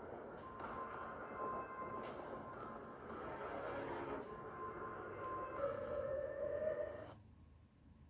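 Film-trailer score and sound-effects mix: a dense wash of sound with held high tones and a tone slowly rising near the end. It cuts off abruptly to a faint low rumble about seven seconds in.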